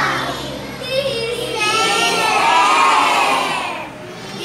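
A class of young children singing together in unison, loud, with a dip as the phrase ends near the end.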